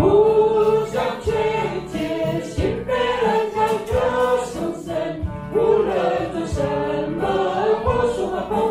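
Mixed choir of men's and women's voices singing together, with low drum strokes keeping a beat underneath.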